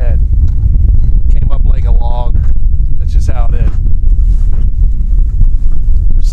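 Wind buffeting the microphone in open air over water, a loud, uneven low rumble throughout, with brief bits of a man's voice about a second and a half in and again about three seconds in.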